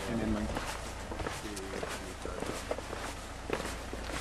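People's voices, briefly near the start and again about a second and a half in, over many irregular footsteps.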